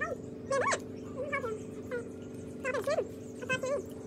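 A small animal whining: about eight short, high cries in quick clusters, each bending up and down in pitch. A steady low hum runs underneath.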